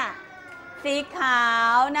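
Speech only: a woman speaking Thai, drawing one word out into a long, high, held vowel.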